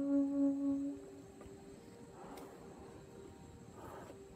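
Flugelhorn holding a long low note that ends about a second in. A faint, soft steady tone lingers after it.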